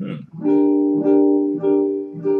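Archtop jazz guitar sounding a single E minor seven flat five chord voicing, struck three times about half a second apart and left ringing between strikes, after a brief hummed "hmm".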